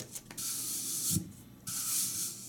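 Brown wrapping paper rubbed over the dried first coat of acrylic varnish on a painted metal watering can, a dry scratchy rubbing in short strokes with a soft bump about a second in. This is hand-smoothing of the varnish, evening out its streaks and edges.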